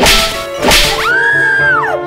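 Edited-in comedy sound effects: two quick whip-like swishes about half a second apart, then a whistle that slides up, holds, and slides back down.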